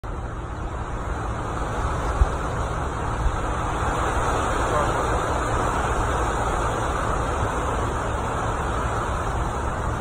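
Steady rumble and hiss of road traffic on the bridge overhead, with two brief low bumps about two and three seconds in.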